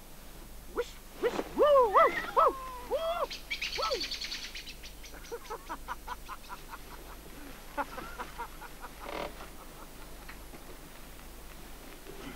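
Birds calling: a string of short calls that rise and fall in pitch, loudest early on, then a fast high trill and a run of quick, evenly spaced chattering notes.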